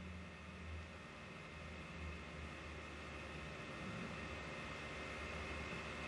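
Quiet room tone: a faint steady hiss with a low hum underneath, and no distinct sounds.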